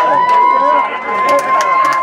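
A voice holding one long, high sung note, with quieter wavering voices beneath it and sharp ticks scattered through; the note breaks off just after the picture changes to a title card.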